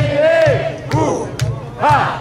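Live rock band: a man's voice sings and shouts long drawn-out phrases that fall in pitch, over a steady drum and bass beat with cymbal hits about twice a second.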